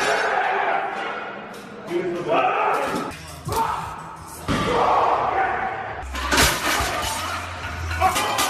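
A heavily loaded deadlift barbell is dropped onto the gym floor with loud crashes, twice: once about three and a half seconds in and again, loudest, past the six-second mark. Shouting voices and gym noise fill the gaps.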